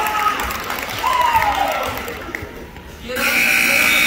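Spectators in a gym shouting, their voices sliding up and down, then easing off for a moment; a little over three seconds in, a steady high scoreboard buzzer starts and holds.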